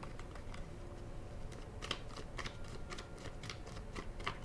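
Faint, irregular light clicks and taps of tarot cards being handled, over a low steady room hum.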